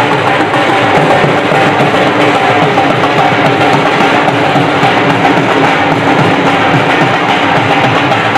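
Two dhol drums played with sticks in a fast, steady rhythm.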